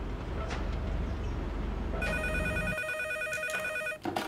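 A low, steady rumble fills the first part. About halfway in, a desk telephone starts ringing and rings until it is cut off at the end as the receiver is picked up.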